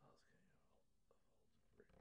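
Near silence, with a faint, indistinct voice near the start and a soft click about a second in.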